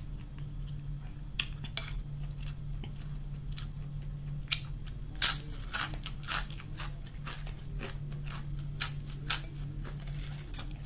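Close-up chewing and crunching of potato chips: sharp, crisp crunches, sparse at first, then coming thick and loudest from about five seconds in, over a low steady hum.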